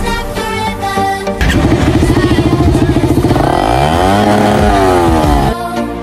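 Suzuki GSX-R150 single-cylinder engine through an aftermarket SC Project slip-on exhaust. It starts about a second and a half in with a fast, even pulsing beat at low revs. It is then revved up and let fall back, the pitch rising and dropping in one sweep before it stops.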